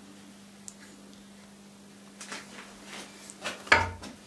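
Handling noise from a welded steel sleeve fitted on a hickory axe handle: light clicks and scrapes of metal and wood as it is turned in the hands, ending in one sharper knock just before the end, over a faint steady hum.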